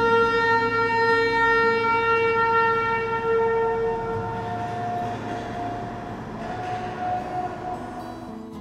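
Darjeeling toy train's whistle sounding one long, steady blast that slowly fades, followed by a higher, fainter note from about five seconds in.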